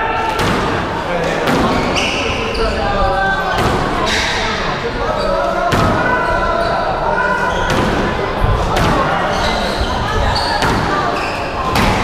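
Squash rally: the ball cracks off racquets and the walls about once a second, with shoes squeaking briefly on the wooden court floor in between.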